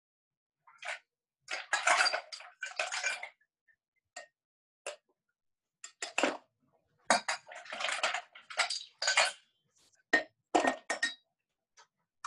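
Ice cubes clattering into a metal cocktail shaker tin and the tins clinking as they are handled, in several separate bursts. This is ice going in after a dry shake of egg white, ready for the wet shake.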